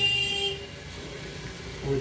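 A horn sounding one steady tone that stops about half a second in, followed by low background noise.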